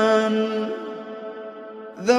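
Quran recitation: a single voice holds one long, steady drawn-out note at an unchanging pitch that gradually fades away, and a new phrase begins abruptly at the very end.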